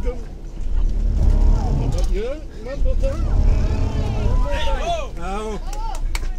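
Vehicle engine labouring under load with a deep rumble that surges twice, as the motorhome stuck in sand is towed free, with people calling out over it.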